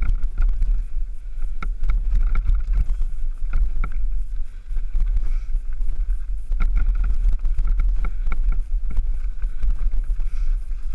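Mountain bike riding down a rough, rocky singletrack, heard from a camera mounted on the bike: a steady low rumble of wind on the microphone, with frequent rattles and clicks as the bike jolts over stones.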